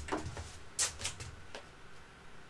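A few short clicks and knocks of objects being picked up and handled, the loudest a little under a second in, growing fainter toward the end.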